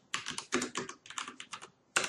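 Computer keyboard typing: a quick run of keystrokes with a couple of short pauses.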